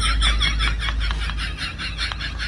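A high-pitched, sped-up laughing sound effect: a fast, even run of short 'ha' notes, about eight a second, fading toward the end.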